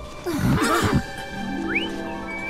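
A cartoon unicorn's short neigh, under a second long, followed by soft background music with a quick rising note.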